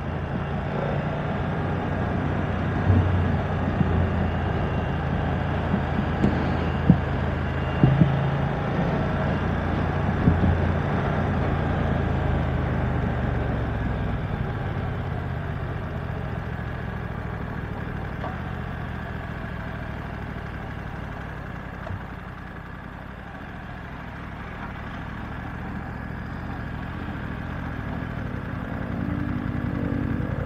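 BMW F900R's parallel-twin engine heard from the rider's seat with wind and road noise as the bike slows. The engine note is strong at first, then fades to a quiet coast about two-thirds of the way through and picks up a little near the end.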